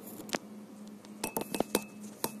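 Handling noise while the phone filming is moved into place: one sharp click, then a quick cluster of four or five clicks and clinks, some with a brief high ring, over a faint steady low hum.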